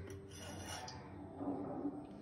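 A glass bowl is handled against a nonstick pan while oil is poured in, making a rough rubbing, scraping sound. It builds about half a second in and is loudest near the end.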